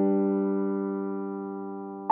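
Background music: one electric piano chord held and slowly fading, with no new note struck.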